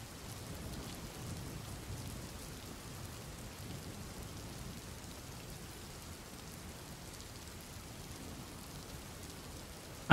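Steady rain falling, faint and even: a rain-sounds ambience bed.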